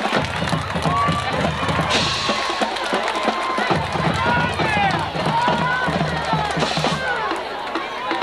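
Marching band playing, with drums and low sustained notes, while spectators in the stands shout and cheer over the music.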